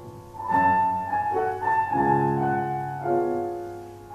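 Steinway grand piano played solo at a slow pace: notes and chords are struck about once a second, and each is left to ring and fade.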